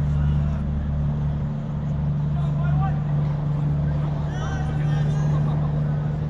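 A loud, steady low drone, with faint distant shouts over it about halfway through and again near the end.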